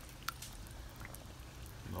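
Faint sounds of a metal spoon moving through shredded pot roast and broth in a pot, with a small click about a third of a second in, over a low steady hum.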